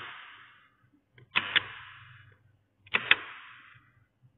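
Latching relay and bell-push switch clicking: a pair of sharp clicks three times, about one and a half seconds apart, each press toggling the relay and the lamps it switches.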